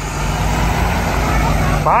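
Double-decker bus engine running as the bus pulls away from the stop, a steady low rumble.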